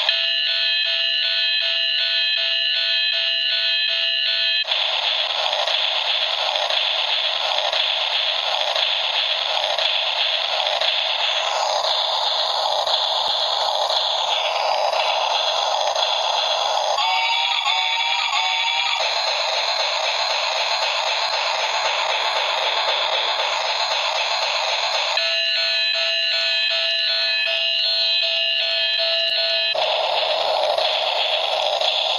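A knockoff Thomas the Tank Engine bump-and-go toy's tiny built-in speaker playing its looped electronic train sound effects: a steady, noisy rushing sound throughout. An electronic tune of steady beeping tones plays at the start and again near the end, with a falling tone a little before halfway and a warbling tone a few seconds after it.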